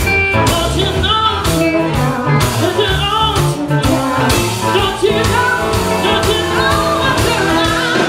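Live blues-rock band playing: electric and acoustic guitars over a drum kit, with bending, wavering melody lines and singing.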